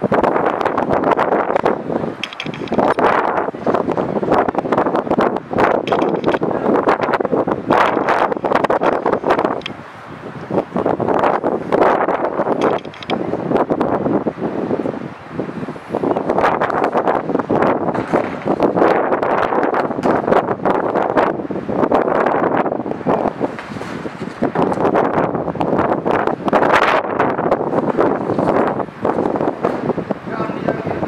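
Wind buffeting the microphone in loud, irregular gusts.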